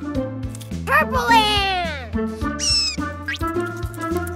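Bouncy children's cartoon music with high, squeaky cartoon sound effects over it: a long falling squeal about a second in, then a short high whistle near three seconds and a quick rising chirp.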